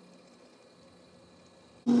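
Faint low hum, then near the end a drill press switches on abruptly and runs with a loud, steady tone while drilling a hole in the bobblehead's plastic.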